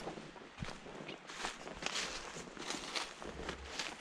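Footsteps crunching through dry fallen leaves at a steady walking pace, about two steps a second.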